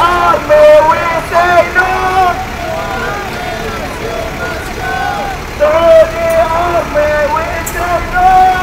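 A man chanting protest slogans through a megaphone in short, repeated shouted phrases, with road traffic running underneath.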